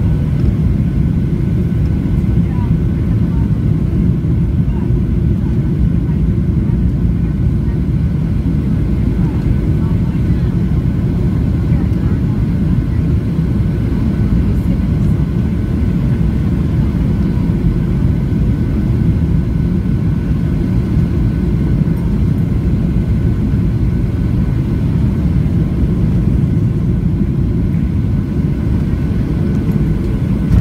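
Cabin noise inside a Boeing 737-700 on final approach, heard at a window seat over the wing: a steady low rumble of airflow and CFM56-7B engines at approach power, with a faint steady whine from the engines.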